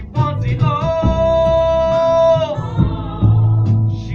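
Live musical-theatre singing with guitar accompaniment: a singer holds one long high note for about a second and a half, then the guitar and bass notes carry on under shorter sung phrases.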